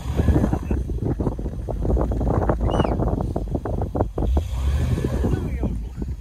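Wind buffeting the microphone, a heavy low rumble with many irregular crackles and clicks through it.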